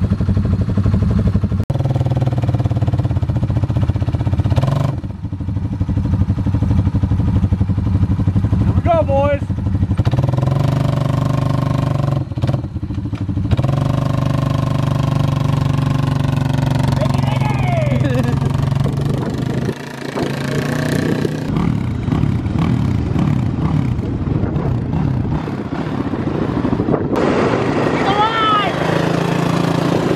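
ATV engine running steadily with a few brief revs while one quad tows a stalled 2006 Honda TRX450R on a strap to bump-start it, the starter suspected to be the original and worn out. The sound turns rougher and noisier in the second half, once the quads are moving.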